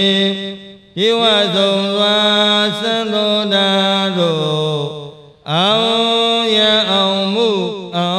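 A monk's single male voice chanting a Pali paritta in long, drawn-out melodic phrases. The chant breaks off for breath twice: just under a second in, and again about five seconds in.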